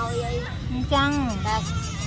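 Speech: a woman talking, over a steady low background rumble.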